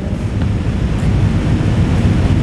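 A steady low rumble of background room noise, with a faint click about a second in.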